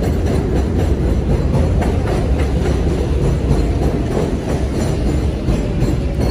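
A loud, steady low rumble of an elevated subway train running past.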